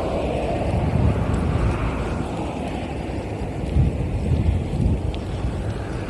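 Wind buffeting the microphone in gusts, a heavy low rumble that swells about a second in and again around four seconds in, over the sound of cars passing on the road.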